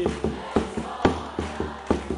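A small hand drum struck with a stick in a steady, quick pattern, about four strokes a second, between sung lines of a live percussion song.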